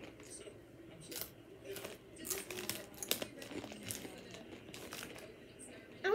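A series of short, sharp crunches and crinkles: Takis rolled tortilla chips being bitten and chewed, with the chip bag crinkling as it is handled.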